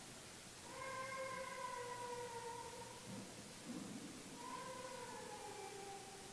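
A faint, high-pitched voice giving two long, drawn-out wails, each sagging slowly in pitch.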